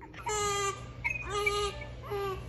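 Newborn baby crying: two short, steady, high-pitched wails of about half a second each, the first near the start and the second about a second later.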